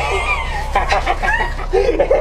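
A person's high-pitched squealing cries, clucking and broken, turning into laughter near the end.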